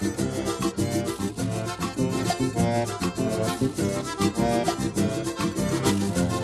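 Instrumental passage of a vaneira, southern Brazilian gaúcho dance music, with the accordion leading over a steady quick beat.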